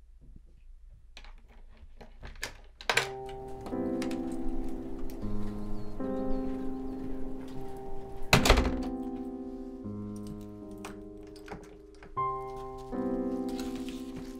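A wooden front door being handled over slow music of held chords. There is a sharp thunk about three seconds in, as the music starts, and a louder heavy thunk about eight and a half seconds in as the door is pulled shut.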